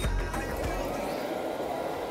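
Background music with a beat and a deep bass that fades out about halfway through, leaving a steadier, lighter texture.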